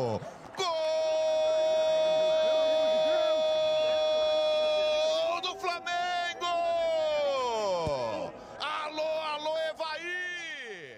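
Football commentator's drawn-out goal cry: one long high note held for about four seconds, then sliding down in pitch, followed by a few shorter excited shouts.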